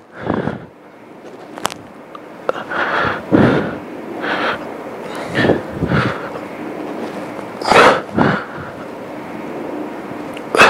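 A man breathing hard from exertion during press-ups: short, forceful breaths in and out, roughly one every second, several in quick pairs.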